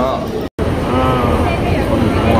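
People talking over a steady low rumble, with the sound cutting out completely for a split second about half a second in.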